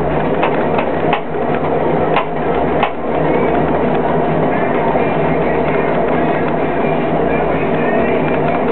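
Electric potter's wheel running steadily while a large lump of wet clay is worked and centered on it by hand, with several sharp clicks in the first three seconds. Music plays in the background.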